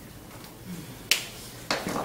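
Two sharp clicks from a whiteboard marker being handled: a crisp snap about a second in, and a duller knock near the end.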